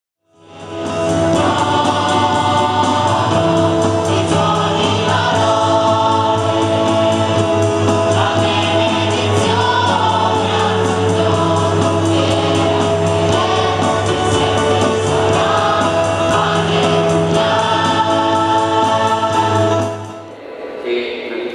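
Choir singing a hymn over steady held low notes, fading in during the first second; a processional hymn accompanying the entrance procession of a Mass.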